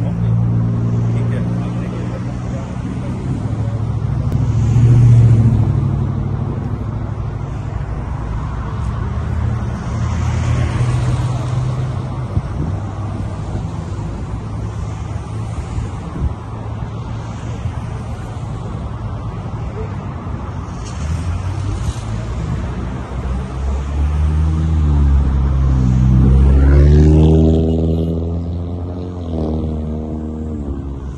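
Road traffic going by close to the roadside, a steady low rumble with louder passes about five seconds in and again near the end, where an engine note falls and rises.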